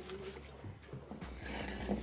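Quiet stretch: faint background voices over a low steady hum.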